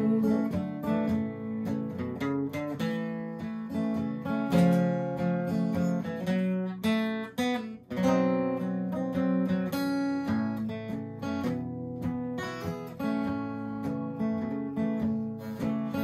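Gibson J-50 acoustic guitar played solo, strummed, as an instrumental break between sung verses of a country song, with a brief drop in the playing about halfway through.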